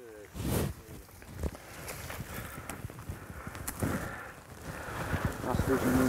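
Footsteps and clothing brushing through tall grass and bush, in uneven rustles, with quiet voices and a spoken line near the end.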